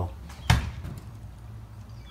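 A single sharp knock about half a second in, a finger tapping the bent bottom edge of a garage door, over a low steady hum.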